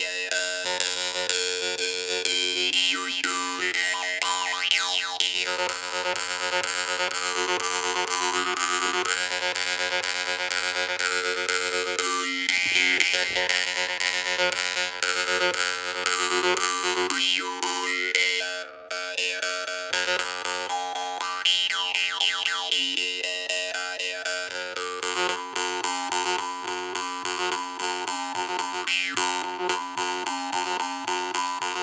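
Jew's harp (vargan) with a magnet fitted, played with rapid, continuous strikes of the reed: a steady drone with overtones swept up and down by the mouth. There is a brief break a little past the middle.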